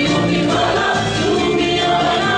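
A stage musical's cast ensemble singing together in chorus over a full instrumental backing, loud and unbroken.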